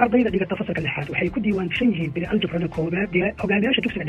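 Speech only: a voice narrating continuously in Somali.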